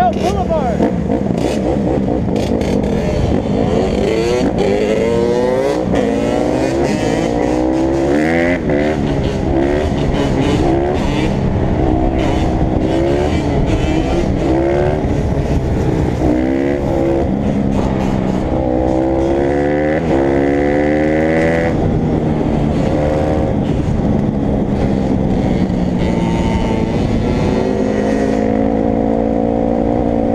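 Dirt bike engine revving hard under acceleration, its pitch climbing and dropping again and again as it works through the gears, then running at a steadier pitch near the end.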